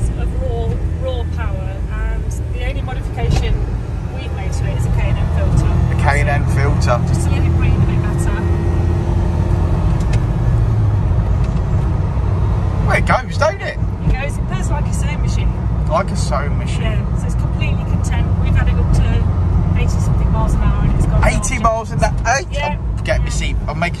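Suzuki Carry kei pickup's small engine running under way, with road noise heard inside the cab; the engine grows louder about four seconds in as it accelerates.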